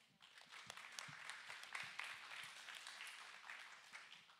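Audience applauding: many separate hand claps that start at once and die away near the end.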